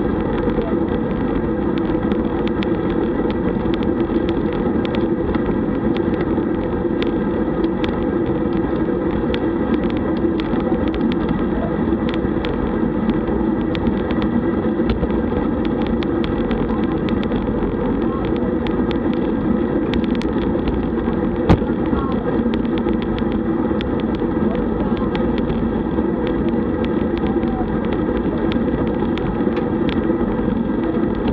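Steady road and wind noise from a road bike rolling in a group ride, with many small clicks and rattles and one sharp knock past the middle.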